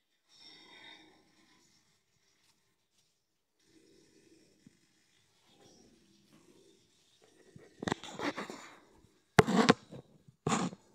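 Handling noise from the phone doing the filming as it is moved about: faint rubbing and rustling, then louder knocks and scraping in the last few seconds, the loudest a sharp bump shortly before the end.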